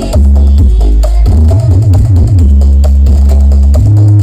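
Electronic dance music played very loud through a huge stacked outdoor sound system of the East Javanese 'sound horeg' kind, heavy deep bass holding for long stretches with short breaks.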